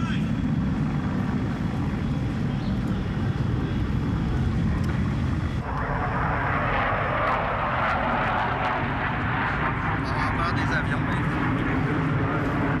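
An aircraft flying over, picked up by a camcorder's microphone: a steady low rumble, with a louder rushing noise swelling in about halfway through and holding for several seconds.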